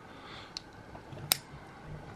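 TwoSun titanium folding knife's D2 blade being swung open by hand, locking with one sharp metallic click partway through, after a fainter click.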